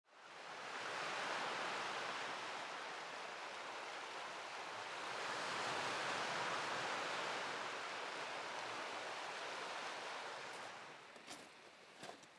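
Small waves washing onto a stony shore, a steady rush that swells twice and dies down near the end. A couple of steps crunch on the stones at the very end.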